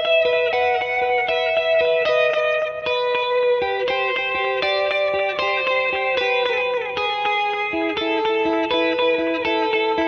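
Electric guitar, a Fender Jazzmaster, picking a quick melodic line built on triads, with delay echoes trailing and overlapping the notes. The line keeps coming back to one high note.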